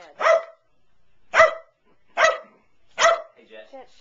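Dog barking: three short, sharp barks a little under a second apart.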